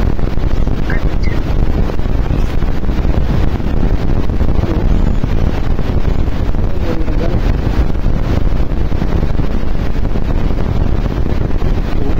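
Wind buffeting an open-air phone microphone: a loud, steady low rumble.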